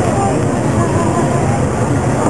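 People talking quietly over a steady low rumble.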